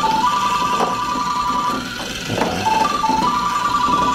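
A telephone ringing with an electronic ring: a short low beep, a short higher beep, then a long held tone, repeating about every three seconds. A few knocks sound under it.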